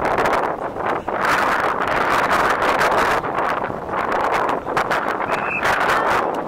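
Wind buffeting the microphone: a loud, uneven rushing that starts suddenly and swells in gusts.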